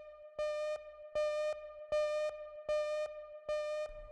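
Synthesized electronic beeping: a buzzy beep pulses evenly about every three-quarters of a second, five times, over a steady held electronic tone.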